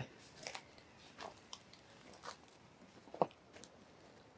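Footsteps crunching on wood-chip mulch: a handful of faint, scattered steps, one a little past three seconds in the sharpest.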